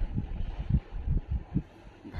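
Irregular low rumble and thumps, several a second, of handling noise on a handheld camera's microphone.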